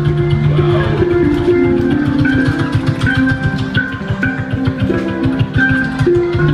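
Handpan played with ringing, sustained notes in a flowing melodic pattern over a dense, fast beatbox rhythm.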